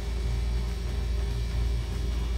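A steady low hum and rumble, with nothing else standing out.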